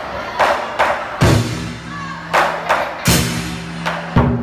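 Lion-dance percussion: cymbals clashing about every half second with heavy drum strokes about a second in and again near the end, in a reverberant hall.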